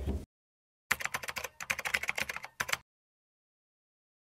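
A rapid run of sharp clicks, like typing on a computer keyboard, lasting about two seconds, with abrupt cuts to dead silence before and after. It is an edited-in transition sound effect.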